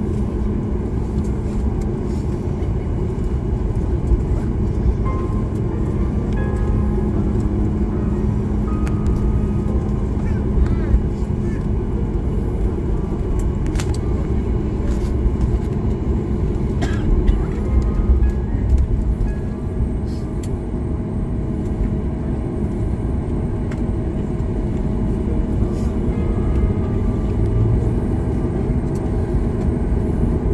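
Cabin noise inside a Boeing 737-8 taxiing after landing: the steady low rumble of its CFM LEAP-1B engines at idle and the rolling gear, with a steady hum that gives way to a higher-pitched tone about two-thirds of the way through.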